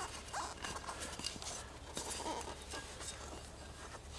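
Faint scattered knocks and rubbing as a power-wheelchair wheel half is worked out of its foam-filled rubber tire.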